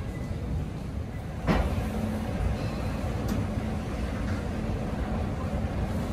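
Escalator running: a steady low mechanical rumble with a faint hum, stepping up in loudness after a sharp click about a second and a half in.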